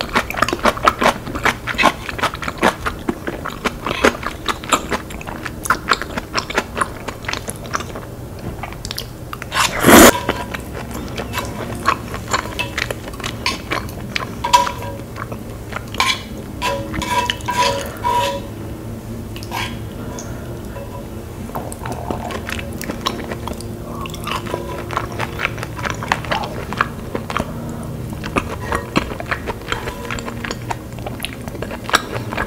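Close-miked chewing of soft, creamy udon noodles: many small wet smacks and clicks, with one louder burst about ten seconds in.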